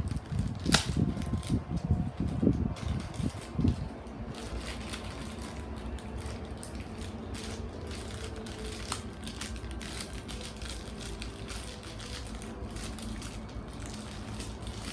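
Handling noise: irregular bumps and a sharp click in the first few seconds, as things are moved near the microphone, then a steady low background hum.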